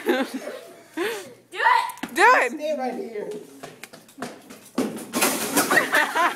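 Young people's voices laughing and whooping after a fall, with a louder, noisier burst of voices near the end.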